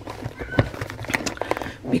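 Rustling and light clicks of stationery being pushed and shuffled into a grey Delphonics fabric zip pouch, with one brief faint high squeak about half a second in.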